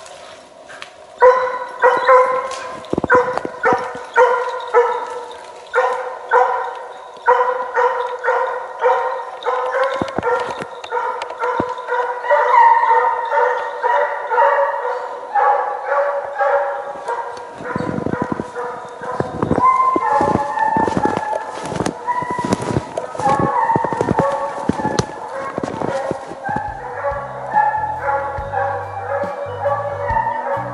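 Russian hounds baying on a hare's trail: a long run of repeated ringing yelps, one to two a second, with a second voice overlapping in the later part. It is the chase voice of hounds working the hare's scent.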